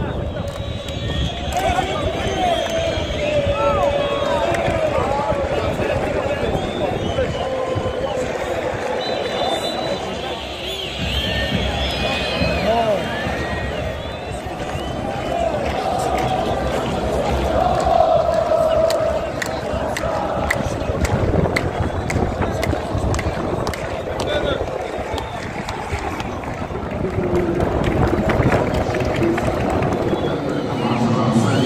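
Football crowd in stadium stands: a steady din of many voices talking, shouting and chanting at once, with no single voice standing out.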